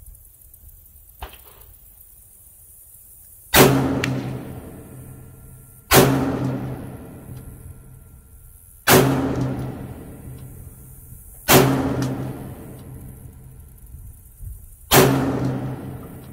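Five slow, deliberately spaced single shots from a short-barrelled 300 Blackout AR-pattern rifle, about two and a half to three and a half seconds apart. Each sharp report trails off over a couple of seconds.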